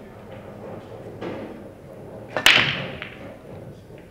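Break shot at English eight-ball pool: a single sharp crack about two and a half seconds in as the cue ball smashes into the rack, then a short fading clatter of balls scattering and knocking off the cushions.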